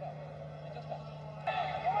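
Quiet football-match broadcast sound from an empty stadium: faint distant players' shouts over a steady low hum. A voice starts to come in near the end.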